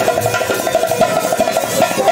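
Instrumental passage of Haryanvi ragni accompaniment: fast, steady drumming on dholak and nakkara (nagara) kettle drums, with deep drum strokes about twice a second, with harmonium.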